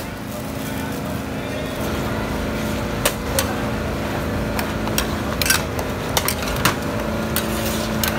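A metal ladle and spatula clank and scrape against a large wok as flat noodles are tossed, in irregular sharp knocks from about three seconds in, over a steady low hum.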